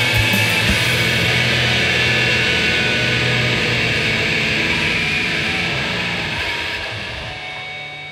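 The closing seconds of a loud, noisy rock song: the drums stop about a second in and the distorted guitars and cymbals are left ringing, fading down toward the end.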